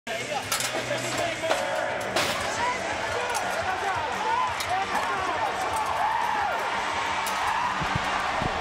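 Indoor arena crowd noise, with shouting voices over music from the public-address system, and a few sharp knocks, the loudest about two seconds in.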